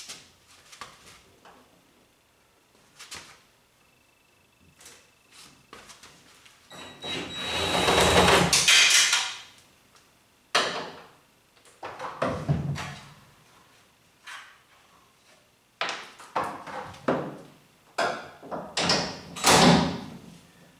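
Knocks and clatter of metal parts and hand tools as a car body is stripped down, with a louder harsh, scraping noise lasting about three seconds in the middle and more bunches of knocks near the end.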